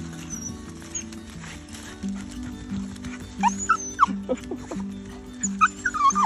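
Background music with sustained notes, over short high squeaky whines from a dog in two clusters, one around the middle and one near the end.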